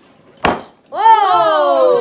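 A single sharp click about half a second in, then a young woman's loud, high vocal cry, held for about a second and falling steadily in pitch, an exclamation of dismay at a taste.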